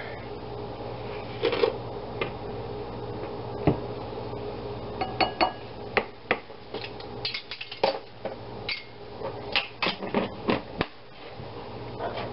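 Metal tablespoon tipping sugar into a glass mixing bowl and tapping against it, and a plastic sugar canister being handled: a run of light, irregular clicks and knocks, a few with a short ring.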